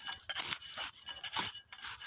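Steel khurpa hand-hoe blade scraping and chopping through dry, cloddy soil in a series of short, irregular strokes, loosening the earth and cutting out weeds around chilli plants.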